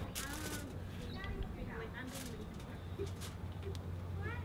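Quiet, faint talking over a low steady hum, broken by three short scratchy rustles: one at the start, one about two seconds in, and one about three seconds in.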